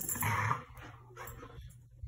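A dog making a short, breathy sound in the first half second, then faint movement sounds that fade toward quiet.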